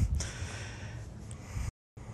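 A short breath at the start, then faint room hiss. The audio drops out to dead silence for a moment near the end, at an edit.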